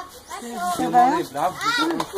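Indistinct voices of people talking, some of them children, overlapping chatter with no clear words.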